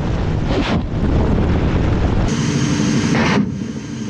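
Ka-52 attack helicopter heard from on board: its rotors and engines make a loud, dense rush with a rapid rotor beat and wind noise on the microphone. The sound changes abruptly a little over halfway through and drops slightly soon after.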